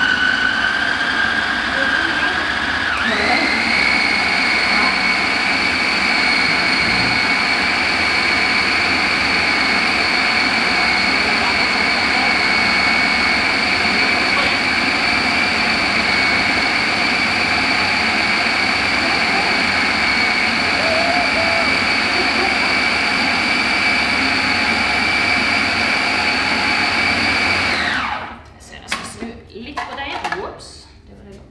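Bosch food processor motor running loudly with a steady whine as it blends raw fish, potato and spices into fish-cake mince. Its pitch steps up about three seconds in, then holds steady until the motor cuts off about two seconds before the end.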